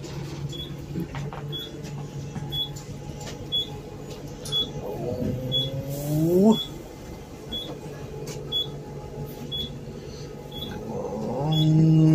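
Inside a bus, the engine runs with a steady low hum while a short electronic beep repeats about every 0.7 seconds. Twice, around the middle and near the end, a louder sound rises in pitch.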